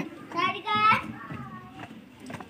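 A young child's short, high-pitched vocal sound, followed by a fainter, softer one.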